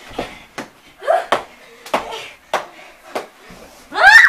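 Children wrestling on a carpeted floor: about six sharp slaps and thumps of hands, feet and bodies striking each other and the floor, with short vocal sounds between them.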